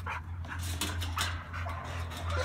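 A dog panting, with a few faint, short noisy breaths.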